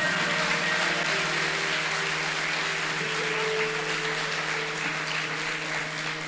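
Congregation applauding, a steady wash of clapping over a sustained keyboard chord, easing off slightly near the end.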